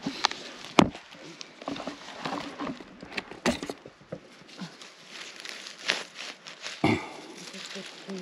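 Dry pine needles, fallen leaves and twigs rustling and crackling on the forest floor as someone moves over it, with several sharp snaps scattered through.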